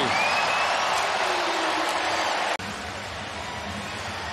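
Stadium crowd cheering a home touchdown, a dense wash of voices that cuts off suddenly about two and a half seconds in, leaving quieter crowd noise.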